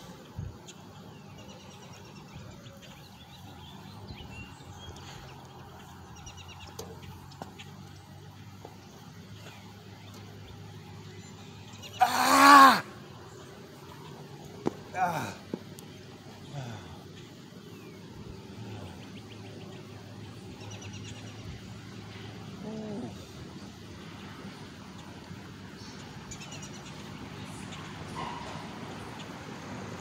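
A man's vocal grunts of effort while doing pull-ups: one loud strained yell about twelve seconds in, a shorter one a few seconds later, and a couple of softer grunts after that, over faint steady background noise.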